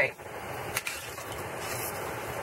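Steady, even noise of a pan of red chile sauce with vegetables simmering on the stove, with one faint click a little under a second in.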